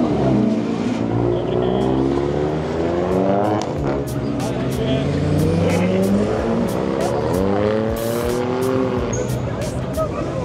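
Cars driving out one after another past the microphone, each engine note climbing in pitch as the car accelerates away; a fresh rising engine note starts about seven seconds in.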